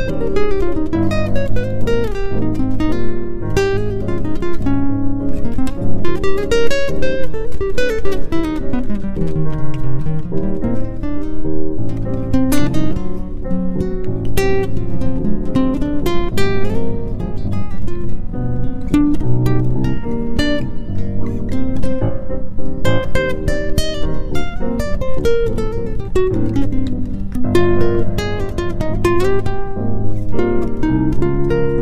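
Instrumental music led by plucked acoustic guitar, a steady stream of quick notes with a moving melody.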